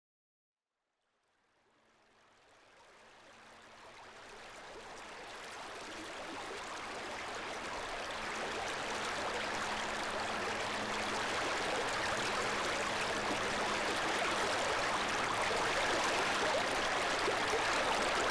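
Water running over the rocks of a shallow creek, a steady rushing that fades in from silence a few seconds in and grows gradually louder.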